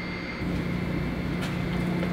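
Steady low hum of a parking garage's machinery or ventilation, stepping up in level about half a second in, with a faint click near the middle.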